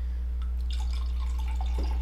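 Moscato wine being poured from a bottle into a glass, the liquid splashing and trickling into the glass from about half a second in, over a steady low hum.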